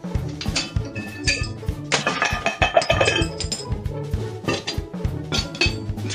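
Background music with a steady beat. About two seconds in, iron weight plates slide off an unclipped dumbbell and crash down in a loud, ringing metallic clatter lasting about a second.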